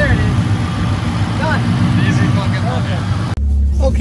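A vehicle engine idling steadily with snatches of faint voices over it. About three and a half seconds in the sound cuts off abruptly to a steadier low hum.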